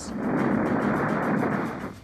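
Steady rushing roar of an aircraft in flight, a propeller fighter's engine laid over the film, swelling in and fading out near the end.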